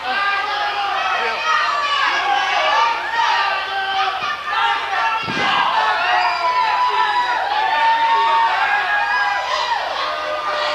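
Wrestling crowd shouting and jeering over one another, many voices overlapping, with a single thud about five seconds in.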